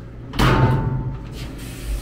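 The lid of a GE top-loading washing machine shuts with a bang about half a second in, followed by a short ringing tail, over a steady low hum.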